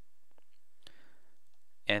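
Quiet room tone with a couple of faint clicks, about a third of a second and just under a second in, before a voice starts near the end.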